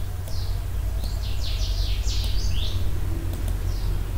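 Birds chirping in short, quickly falling high notes, most of them in a burst in the middle, over a steady low hum. A few faint clicks are heard too.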